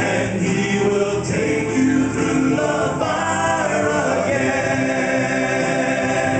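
Male southern gospel quartet singing in four-part harmony, holding long notes that move to a new chord every second or two.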